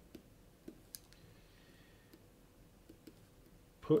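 Faint, scattered clicks and taps of someone writing up lecture notes, over quiet room tone. A word of speech comes in at the very end.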